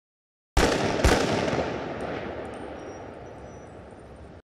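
An edited sound-effect impact: a sudden booming hit about half a second in, a second hit half a second later, then a long echoing tail that slowly fades out.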